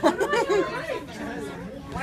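Speech only: several people chatting, louder in the first second and fainter after.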